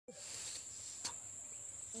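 Field insects trilling with a steady, high, unbroken tone, with a single click about a second in.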